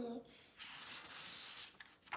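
A picture-book page being turned by hand: a soft papery rub lasting about a second.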